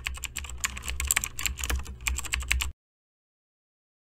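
Rapid, uneven clicking of typing on a keyboard, over a low hum, cutting off abruptly about two and a half seconds in.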